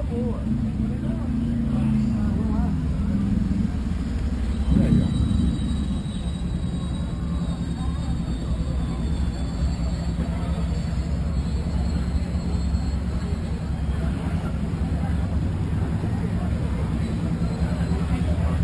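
Motorcycle engine running at low speed with a steady low rumble, rising briefly and louder about five seconds in.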